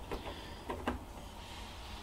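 A few faint clicks, one at the start and two close together a little under a second in, as a USB cable is plugged in to power up an external hard drive, over a low steady hum.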